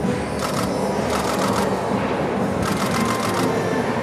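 Bursts of rapid camera-shutter clicks, coming in several clusters. They sound over a steady background murmur of voices.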